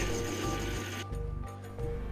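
Background music with steady held tones over a low pulsing beat.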